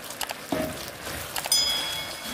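Mouse-click sound effects followed by a short, high ringing chime, from a subscribe-button and notification-bell animation, over a faint hiss.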